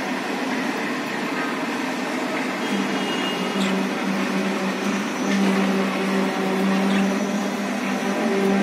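A steady machine-like hum, with a low drone that comes and goes from about three seconds in, and a few faint chirps from pet budgerigars.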